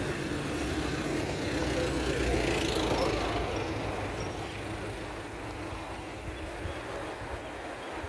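A motor vehicle driving past on the street: its engine and tyre noise grow louder to a peak about three seconds in, then fade away.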